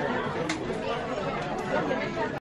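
Indistinct chatter of several people talking at once in a busy shop, with one light click about half a second in.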